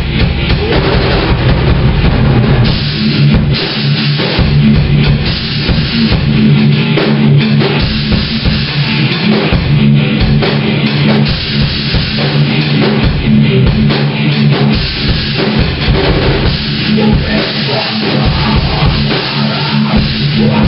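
Heavy metal band playing: electric guitar riffing over a full drum kit with a driving bass drum, loud and without a break.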